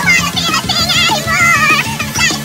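Chipmunk-style high-pitched singing with a wavering vibrato, over a backing track with steady chords and a regular beat.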